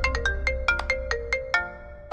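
Mobile phone ringtone: a quick melodic tune of short, marimba-like notes that fades out near the end.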